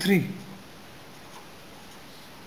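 A pen writing figures on paper, faint, after a man's spoken word at the very start.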